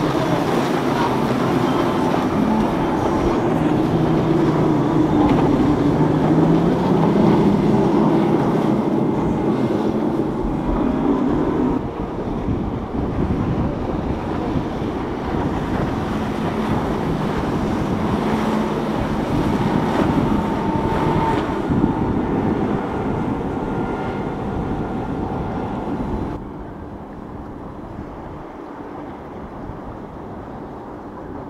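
Outboard-powered boats running through the inlet: a steady engine drone mixed with the rush of water and wind, its pitch rising a few seconds in. The sound drops suddenly near the end.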